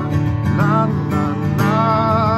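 Acoustic guitar strummed steadily, with a man's voice singing a wordless melody over it.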